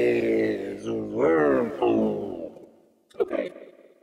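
Vio vocoder synth on its Wormhole preset: a vocoded voice with many stacked tones that slides down in pitch, swoops up about a second in and fades out by about halfway. A short burst follows near the end.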